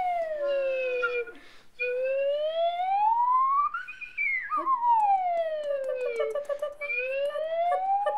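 Musical glissando: one sustained tone slides slowly down and back up in pitch, over and over like a siren, with short breaks between the sweeps. A few steady held notes sound under it about a second in.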